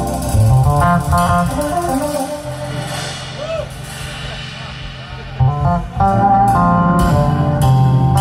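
Electric bass playing a slow intro line of moving low notes, with sustained Hammond organ chords behind it that fall away for a few seconds in the middle and come back in about six seconds in.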